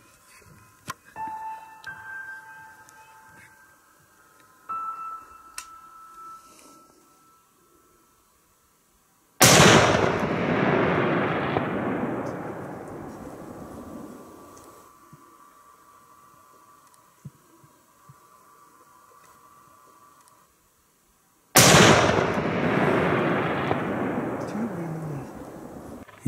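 Two hunting-rifle shots about twelve seconds apart, each followed by a long echo rolling off the mountainsides for several seconds.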